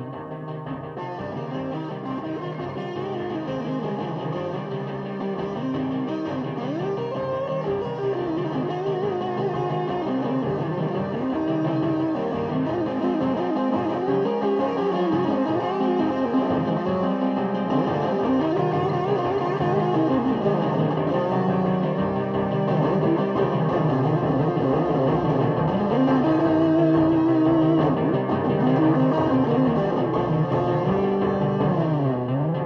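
Instrumental Krautrock music led by guitar through effects, with wavering, gliding lines, building slowly in loudness.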